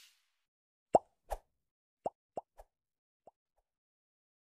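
A string of short pop sound effects, about seven quick plops at uneven spacing, the first the loudest and the last ones faint.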